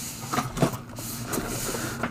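A hard-shell zippered camera case sliding and turning on a wooden tabletop under a hand: a soft scraping, with a few light knocks in the first second.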